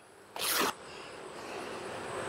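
A short ripping rustle about half a second in, as a white cloth sheet used as a small hive beetle trap is torn or pulled while being laid over the hive's top bars, followed by a faint hiss.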